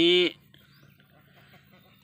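A man's voice drawing out the last word of a sentence, then a pause with only a faint outdoor background.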